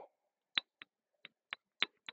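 Chalk on a blackboard while letters are written: about five short, sharp clicks at irregular intervals as the chalk strikes the board.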